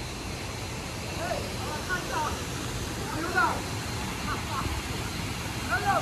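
Distant voices of people bathing in a stream pool, calling out in short bursts several times, over a steady background hiss.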